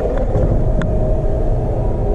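Steady low rumble of a busy exhibition hall's background noise, with a faint hum and a couple of light clicks, one about a second in.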